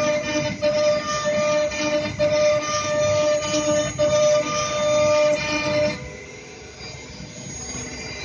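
CNC router spindle whining at a steady pitch as its bit mills Corian acrylic solid surface, with a grinding cutting noise underneath. It drops away and quieter about six seconds in, then returns near the end.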